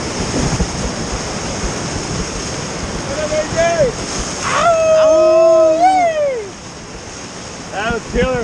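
Whitewater rapid rushing loudly around a raft. About three seconds in a rafter gives a short shout, then a long, loud held yell that falls away at its end; the water noise then drops.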